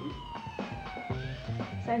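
A siren-like wail that slides down in pitch over about a second and then climbs again, over background music.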